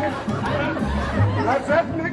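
Calypso band playing an instrumental break with a steady, bouncing bass line, with voices talking and chattering over the music.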